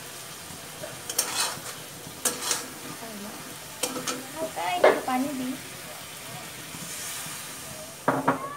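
Chicken pieces and spice powder sizzling in oil in a metal karahi while a long metal spatula stirs them, scraping the pan with several sharp strokes over a steady frying hiss.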